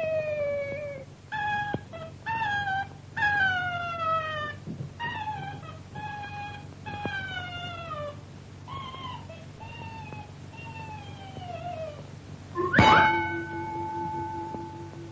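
A cartoon soundtrack with a run of short, wavering pitched notes, each sliding downward, one after another. Near the end a sharp strike rings on as a steady bell-like tone.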